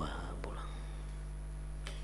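A pause in speech filled by a steady low electrical hum from the microphone and amplifier, with two faint clicks, one about half a second in and one near the end.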